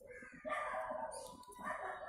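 Rooster crowing faintly: one drawn-out call, rising again near the end.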